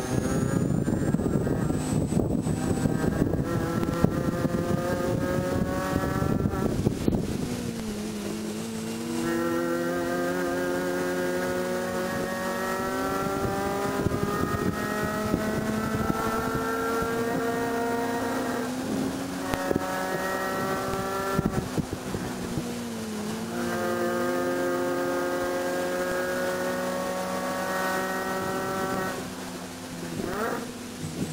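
Supercharged 1.6-litre four-cylinder engine of a 2006 Mini Cooper S John Cooper Works, heard from inside the race-car cabin. It is held at high revs under full acceleration, its note climbing steadily toward about 7000 rpm, then breaks for an upshift from third to fourth about two-thirds of the way through. A brief lift follows a few seconds later before the note climbs again. The first several seconds are rougher and noisier.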